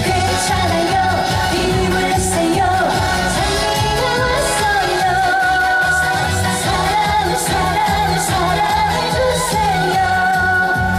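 A woman sings a Korean trot song into a microphone over amplified backing music with a steady beat and bass.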